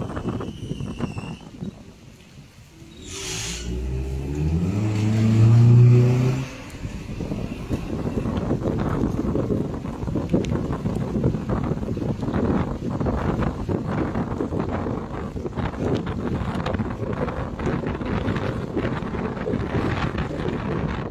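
Car engine revving up, rising in pitch for about three seconds and cutting off abruptly a few seconds in, heard from inside the car. Then a steady rush of tyres on the wet, flooded road with wind, and a constant light crackle.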